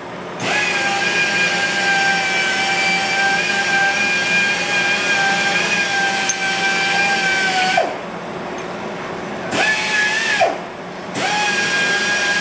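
Sunnen honing machine spinning its mandrel inside a Datsun truck spindle's kingpin bushing, a steady whine with the scrape of the hone in cutting oil. Its pitch falls as it stops about eight seconds in; it runs again for about a second, stops once more, and starts up again near the end.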